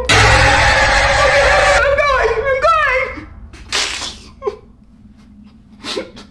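A person screaming loudly for about two seconds at a steady pitch, followed by a second of wavering, wailing cries and a short noisy burst near the middle.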